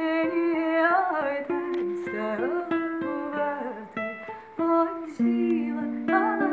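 Music: a woman singing, holding notes and sliding between them, over plucked-string accompaniment.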